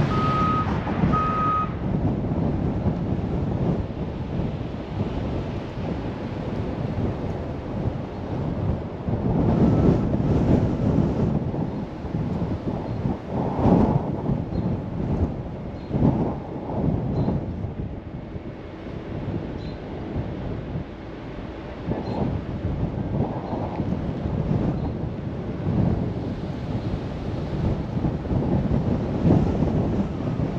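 Car driving, with wind buffeting the microphone over the road noise in uneven gusts. A few short, high electronic beeps sound in the first second and a half.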